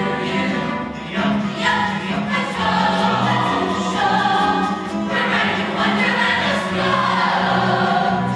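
A mixed choir of men's and women's voices singing together, with a pulsing low bass part underneath.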